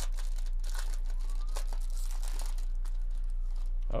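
Hands tearing open and crinkling the foil wrapper of a baseball card pack: an irregular run of crackling rustles, over a steady low electrical hum.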